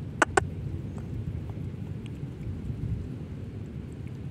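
A steady low rumbling noise, with two sharp clicks about a quarter and half a second in.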